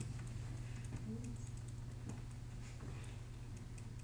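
Quiet classroom room tone: a steady low hum with faint, irregular light clicks and ticks over it.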